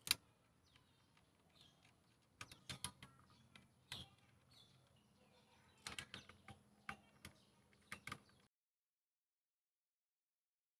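Faint, scattered clicks and taps of plastic ignition coils and their small bolts being handled and seated by hand on the engine's cam cover, coming in small clusters a second or two apart.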